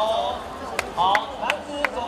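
Sharp rhythmic claps, about three a second, starting a little under a second in, with people's voices calling over them.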